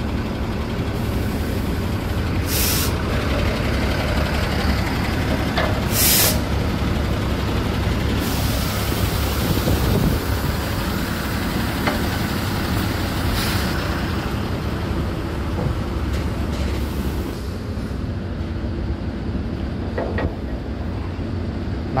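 Diesel truck engine idling with a steady low rumble, with two short hisses of released air-brake air about 3 and 6 seconds in and a longer stretch of hiss in the middle.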